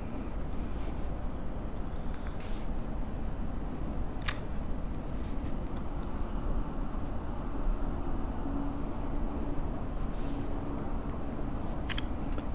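Steady low background rumble with a faint hiss, and a single sharp click about four seconds in.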